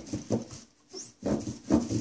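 A few soft, short vocal sounds with a brief hush between them.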